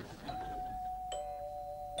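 Two-note doorbell chime, a ding-dong: a higher note struck just after the start, then a lower note about a second in, both ringing on.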